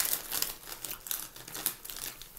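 Rustle with irregular light crackling clicks, typical of clothing moving close to the microphone.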